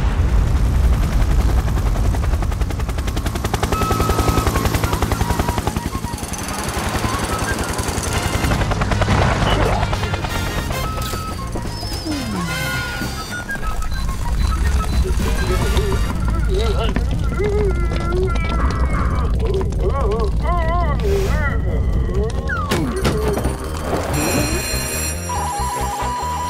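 Animated cartoon soundtrack: music under deep rumbling and fast rattling sound effects, with wordless character vocal sounds in the second half and a steady electronic beeping starting just before the end.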